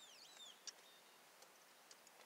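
Near silence, with a faint bird calling a quick series of high, downward-slurred whistled notes that stop about half a second in, followed by a soft click.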